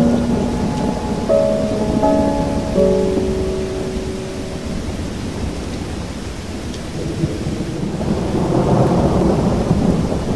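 Background soundtrack of steady rain and thunder, with a few slow, held musical notes during the first half.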